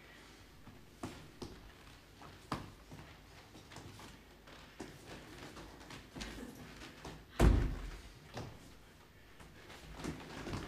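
Actors' feet stepping and stamping on a stage floor: scattered light knocks, with one loud thud about seven and a half seconds in.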